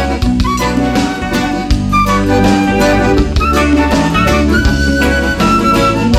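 Live band music with a concert flute playing the melody, stepping from note to note, over electric bass and a drum kit keeping a steady beat.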